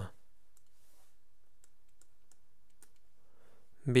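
Faint, scattered clicks and light taps of a stylus on a writing tablet while a figure is handwritten, over a steady low hiss.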